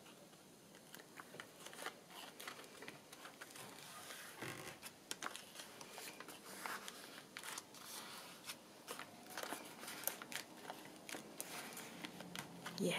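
Faint paper rustling with scattered small taps and scrapes as fingers press and smooth a freshly glued paper pocket down onto a journal page.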